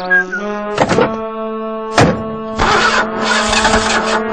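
Cartoon score holding a chord, cut by two car-door thunks about a second apart. From about two and a half seconds in, a loud noisy rush follows, a cartoon car engine starting and pulling away.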